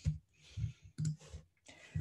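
A few short computer mouse clicks spread over two seconds, the sharpest about a second in, as the slides are changed.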